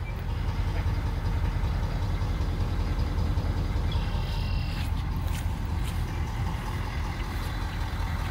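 A 2018 Ford F-250's 6.7-litre Power Stroke turbo-diesel V8 idling steadily, with a low, even rumble. A few light clicks sound in the second half.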